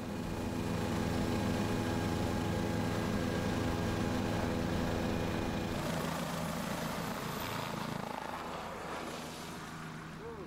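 Helicopter running steadily overhead, its rotor and turbine making an even hum that grows fainter over the last few seconds as it pulls away.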